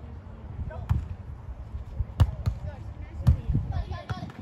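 A volleyball struck by players' hands and arms during a rally: sharp smacks about a second in, twice in quick succession just after two seconds, and once more after three seconds.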